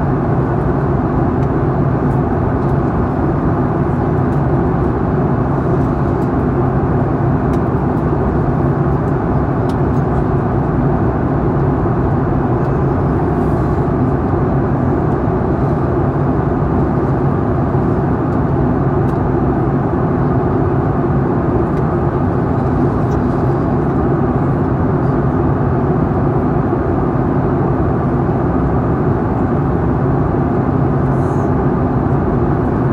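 Jet airliner cabin noise in flight, heard from a window seat beside the wing engine: the turbofan's steady, low drone mixed with airflow rush, unchanging throughout.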